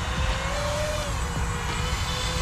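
Five-inch Diatone Roma F5 V2 FPV quadcopter hovering close by: a steady propeller whine that rises slightly in pitch and falls back about a second in, over a low rumble.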